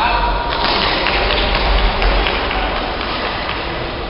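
Busy indoor badminton hall: a steady din of voices and scattered sharp clicks of rackets hitting shuttlecocks across the courts, over a constant low rumble.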